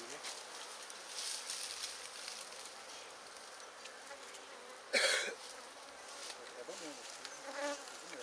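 Honeybees buzzing steadily around an opened hive as bee-covered frames are lifted out. One brief, loud burst of noise breaks in about five seconds in.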